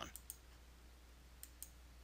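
Near silence with a few faint computer mouse clicks: one early, then two in quick succession about a second and a half in.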